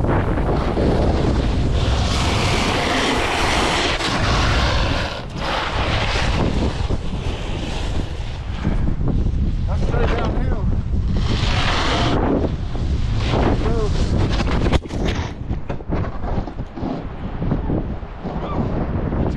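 Wind buffeting an action-camera microphone while a snowboard slides over a groomed run. The board's edge scrapes the snow in hissing rushes, strongest about two to four seconds in and again around eleven seconds. A sudden knock comes about fifteen seconds in.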